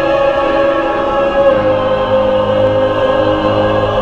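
Mixed choir singing long held chords, with a steady low note coming in about a second and a half in.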